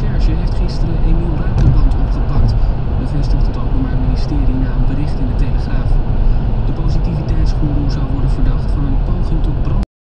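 Steady low road and engine rumble inside a car cabin cruising at motorway speed, about 120 km/h, with a voice talking under it throughout. The sound cuts off suddenly just before the end.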